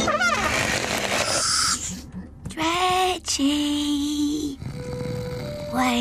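Cartoon snoring sound effects: a whistle-like rising glide, then held honking tones after a brief pause, with children's background music.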